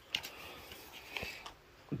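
Quiet handling noises: a few light knocks and rustles as an AR-style rifle is shifted on a blanket, with a spoken word starting right at the end.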